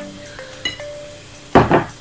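A few light clinks of a spoon and drinking glass against a ceramic bowl, then one louder knock about one and a half seconds in as the glass is set down on the table. Soft background music runs underneath.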